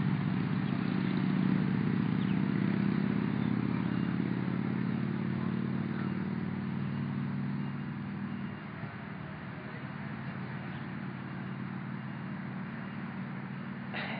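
A motor vehicle's engine running steadily at low revs. Its sound drops noticeably about eight and a half seconds in and carries on more quietly.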